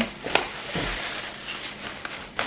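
Tissue paper rustling and crinkling as it is pulled from a paper gift bag, with one sharper crackle just after the start.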